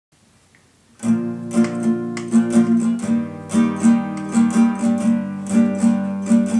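Nylon-string classical guitar played fingerstyle, starting about a second in: a repeating pattern of plucked notes over ringing lower strings.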